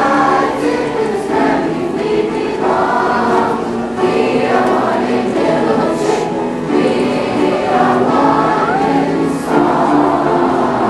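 Middle school concert chorus singing, several young voices holding sustained notes together in a steady choral line.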